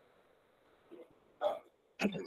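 Low room noise in a meeting room, with one short vocal sound about one and a half seconds in, like a single clipped syllable.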